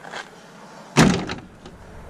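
Rear hatch of a Nissan 240SX (S13) hatchback slammed shut once, a single loud thunk about a second in, followed by a brief rattle.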